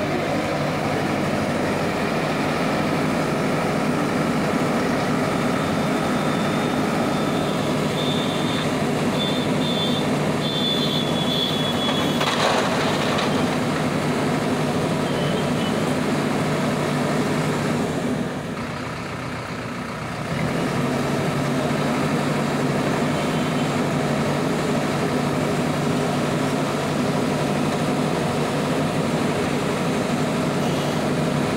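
Diesel engine of an Escorts backhoe loader running steadily close by, easing off for about two seconds past the middle.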